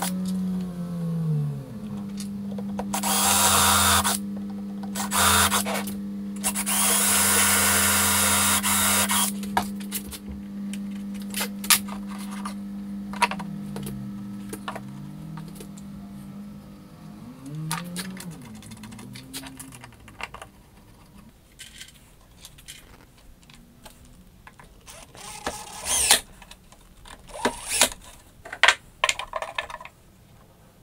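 Cordless drill spinning up and drilling into chipboard in several loud bursts over the first ten seconds, its motor running steadily between them. The motor winds up and down a few more times, then clicks and knocks of parts and tools being handled take over in the last third.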